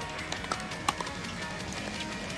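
Hollow pocks of pickleball paddles striking a plastic ball, four or so in quick succession in the first second, the loudest just under a second in. Steady background music plays underneath.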